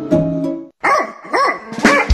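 Plucked-string music stops abruptly about two-thirds of a second in. After a brief gap, a dog barks about three times in short rising-and-falling calls.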